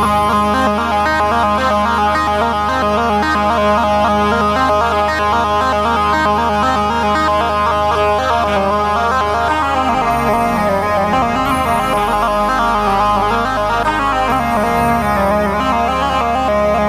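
Roland Juno-G synthesizer keyboard played live with both hands: a melody in one of the player's own Indian-style tones over a steady low bass. The bass part changes about ten seconds in.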